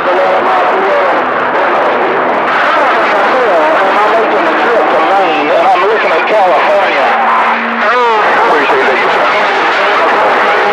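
CB radio receiver on channel 28 (27.285 MHz) picking up distant skip: garbled, unintelligible voices of stations talking over one another, buried in steady static. About three-quarters of the way through there is a short steady tone, followed by a quick warbling chirp.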